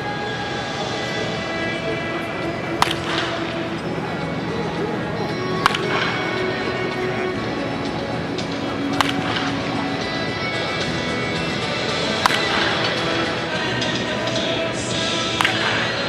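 Background music with five sharp cracks about three seconds apart: a bat striking baseballs in batting practice.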